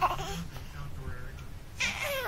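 A baby squealing: a brief high squeal at the start, then a longer squeal near the end that slides down in pitch.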